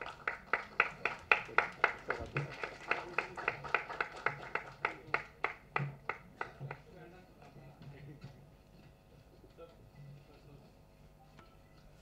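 Hand clapping in an even rhythm of about three or four claps a second, fading away after about six seconds, followed by faint background music.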